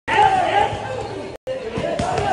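People talking, voices chattering, with a sudden brief drop-out about one and a half seconds in.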